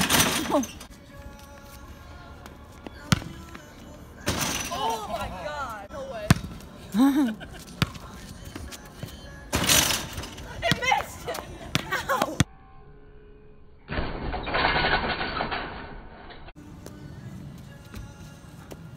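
Several people shouting and exclaiming in short bursts, with a few sharp knocks from a basketball hitting a portable hoop's rim and backboard during dunk attempts.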